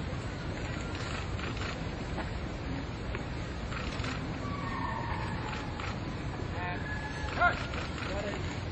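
Steady outdoor background noise with faint distant voices; a brief, louder voice near the end.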